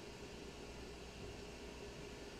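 Quiet room tone: a faint steady hiss with a faint hum.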